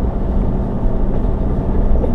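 A vehicle driving on a dirt and gravel road, heard from inside the cabin: a steady low engine and road rumble with tyre noise.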